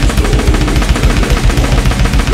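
Alesis DM6 electronic drum kit played fast in a metal drum cover: a dense, even stream of rapid kick and snare strokes, like blast beats or double-bass drumming, over the band's recorded song.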